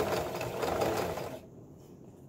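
Domestic electric sewing machine stitching, its needle running fast for about a second and a half and then stopping.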